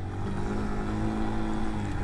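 Suzuki VanVan 125 single-cylinder four-stroke engine running steadily at an even, low engine speed while the bike is ridden slowly along the trail.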